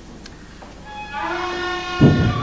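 Music entering about a second in: a sustained chord of several held notes that swells and holds, over quiet room tone.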